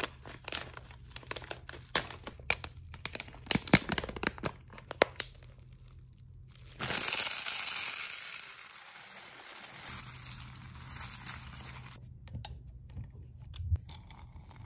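A plastic bag of hard wax beads being torn open and crinkled, with many sharp crackles. About seven seconds in comes a sudden rush as the beads pour into a metal wax-warmer pot, fading over a few seconds. Scattered clicks follow as the beads are stirred.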